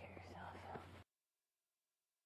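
Faint whispering over a steady hiss and low hum from the feed's audio, which cuts off suddenly about a second in to dead silence as the live stream drops out.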